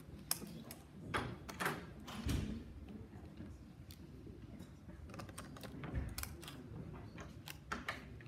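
Irregular light clicks and knocks, with a few low thumps about two seconds in and again near six seconds.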